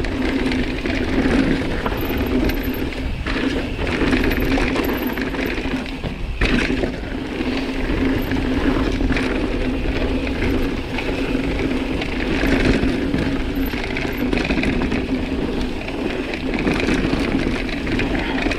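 Mountain bike descending a dirt and gravel trail at speed: steady tyre noise on the loose surface and wind on the camera microphone, with short knocks and rattles from the bike over bumps.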